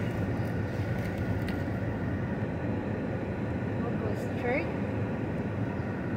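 Steady road and engine noise heard from inside a moving car's cabin.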